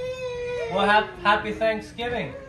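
A long, drawn-out voice-like call that falls slowly in pitch, with a few short voiced sounds over it in the middle.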